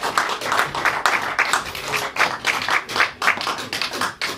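Audience applauding, with individual claps distinct.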